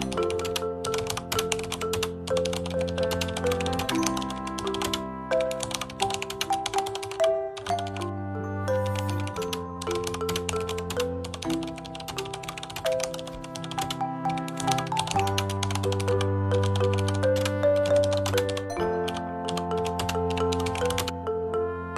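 Keyboard-typing sound effect, a rapid run of clicks with short pauses, laid over background music of slow held chords with a low bass.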